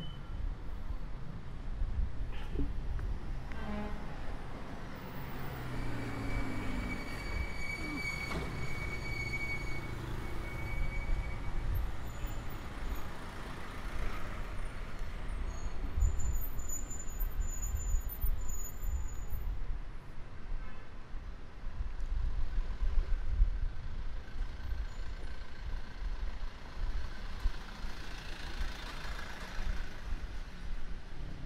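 City street traffic heard while walking: motor vehicles passing over a steady low rumble, with a high steady tone held for a few seconds about six seconds in.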